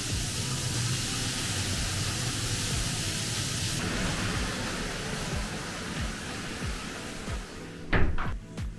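Loud, steady rushing hiss of water from a jacuzzi's gushing spout and jets, over background music with a beat. About halfway through, the hiss turns duller.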